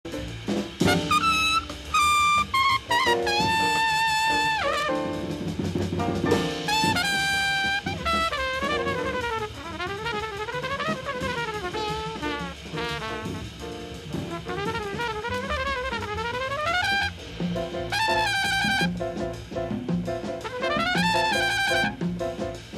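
Jazz music with a brass lead, likely trumpet, over drums. It plays held notes at first, then fast runs that rise and fall, then quick repeated notes near the end.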